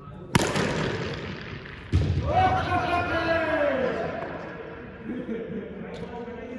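Cricket bat striking the ball with a sharp crack that rings out in a large hall, then a second knock about a second and a half later, followed by a man's drawn-out shout falling in pitch.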